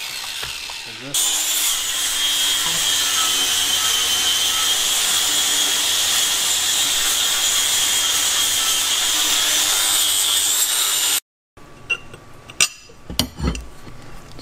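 Steady heavy rain, a loud even hiss, heard from an open garage; it cuts off abruptly about three seconds before the end, and a few short metallic clicks follow.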